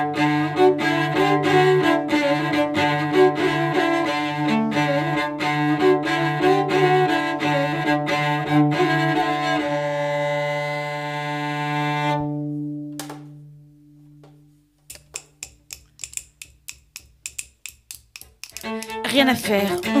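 Solo cello, bowed, playing a slow melody over a sustained low drone note; about twelve seconds in the notes die away. After a moment of near silence comes a run of quick, sharp clicks, several a second, and the bowed cello starts again near the end.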